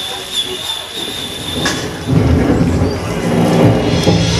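A low rumbling noise effect from the performance soundtrack, quieter at first and then swelling in loudly about halfway through.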